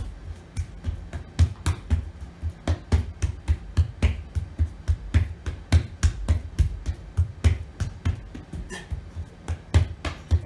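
A rapid, steady run of hand slaps on a rubber gym floor, several a second. A person in push-up position alternately lifts each hand across to touch the other and slaps it back down, as in the timed Davies closed kinetic chain shoulder stability test.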